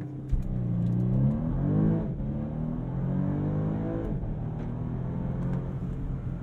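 2022 Bentley Flying Spur Hybrid's 2.9-litre twin-turbocharged V6 pulling at full throttle from a standstill in Sport mode, heard from inside the cabin. Its pitch rises through the gears of the eight-speed dual-clutch gearbox, dropping at quick upshifts about two seconds in and again about four seconds in, over a steady road rumble.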